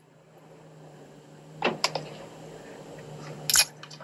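A paper or foil food wrapper crinkling as the wrapped food is handled: a couple of faint crackles partway through and one louder, short crinkle near the end. A steady low hum runs underneath.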